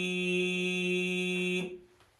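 A man's voice holding one long steady low note, which stops about one and a half seconds in.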